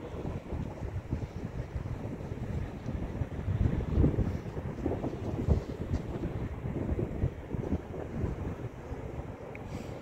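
Wind buffeting a phone's microphone outdoors: an uneven low rumble that swells in gusts, strongest about four and five and a half seconds in.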